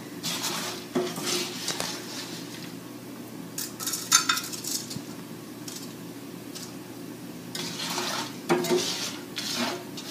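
Wooden spoon scraping and scooping a thick seed-and-bacon-fat suet mixture in a cast-iron skillet and knocking it into a metal muffin tin: scattered scrapes and clinks, the sharpest about four seconds in and a run of them near the end, over a steady low hum.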